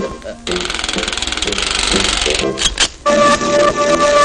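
Cartoon sound effect of a mad scientist's molecule mixing machine being run: a rapid, rattling buzz for about two seconds, a few clicks, then a steady high electronic tone.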